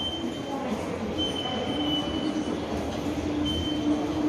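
Small remote-control stunt car's electric motor whirring as it drives over a tiled floor, a steady hum from about a second in, over the noise of a busy station hall.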